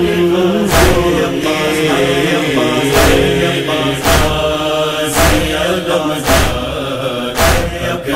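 A recorded noha, a Shia lament, chanted by a male reciter over steady held tones, with a heavy beat striking about once a second.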